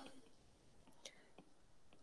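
Near silence: quiet room tone with two faint taps of a stylus on a tablet screen about a second in, as a line of handwriting is written.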